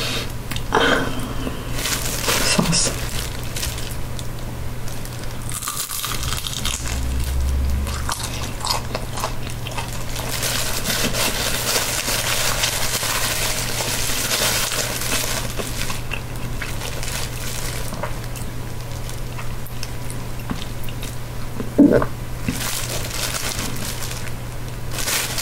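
Close-miked eating of a crispy fried spring roll: a few crunchy bites near the start, then steady crunching and chewing.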